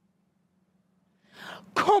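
Near silence with a faint hum, then near the end a sharp audible intake of breath, a gasp, and a woman's voice crying out loud as a dramatic verse recitation begins.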